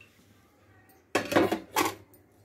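Metal cooking pots and utensils clattering on the stove: quiet at first, then two loud clanks about a second in and near the end.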